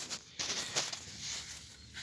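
Faint rustling and handling noise with a couple of soft knocks, as the open timing case of a Yanmar B8 engine is handled.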